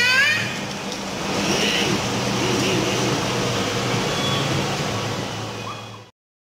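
Busy café room noise: a steady low hum under faint, indistinct background voices, with a child's high voice trailing off at the very start. The sound cuts off suddenly at the end.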